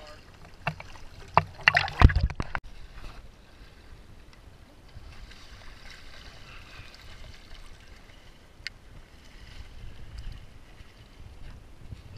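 River water sloshing and splashing around an action camera held at and below the surface, with a few sharp splashes in the first two or three seconds, then a quieter, muffled wash of water.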